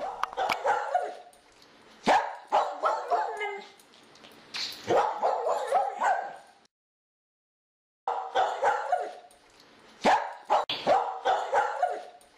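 A dog barking and yipping in short repeated bursts. The sound cuts out completely for about a second just past halfway, then the barking resumes.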